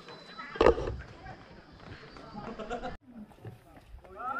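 A person's wordless vocalizing, with one loud burst about half a second in and more voice after it; the sound cuts off abruptly about three seconds in.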